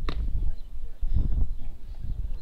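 Wind buffeting the microphone in uneven gusts, with a short sharp knock at the very start.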